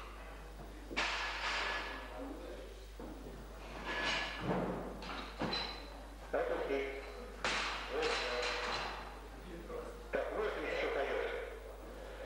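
Loaded barbell dropped to the floor with a heavy thud after a snatch, among several other sharp knocks and voices echoing in the hall.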